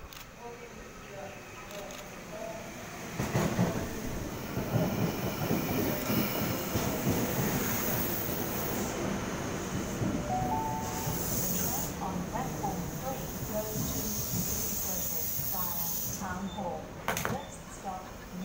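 Double-deck Sydney Trains electric suburban train (a K set) pulling into the platform. Its running noise swells about three seconds in and stays loud, with squealing brakes as it slows to a stop near the end.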